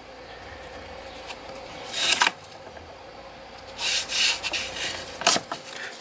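Masking tape being pulled and smoothed down onto watercolor paper. There is a short rasp about two seconds in, a longer one around four seconds, and a click near the end.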